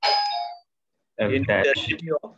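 A short chime of a few steady tones sounds at the start and fades after about half a second. A voice then speaks through the second half.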